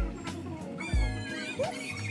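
Background music with a steady beat of low drum thumps and bass. About a second in, a high wavering cry lasts nearly a second.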